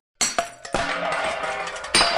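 Cartoon soundtrack effect: after a brief silence, a sudden metallic chiming and clinking strikes in, then a high ringing shimmer, with a second strike about half a second later and a sharp click near the end.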